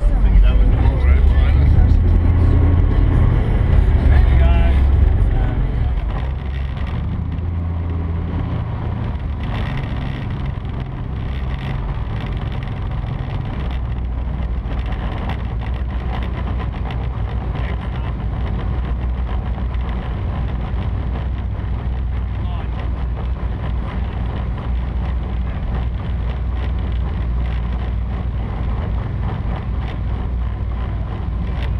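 Twin Mercury 1350 engines of an MTI offshore catamaran running at low speed, a steady low-pitched drone. Louder for about the first five seconds, then settling to an even, quieter level.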